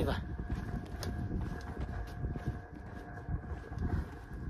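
Wind buffeting a phone microphone, an uneven low rumble that dips and swells.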